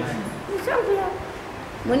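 A dog's brief high yelp, rising then falling in pitch, about half a second in, heard during a pause in a woman's speech.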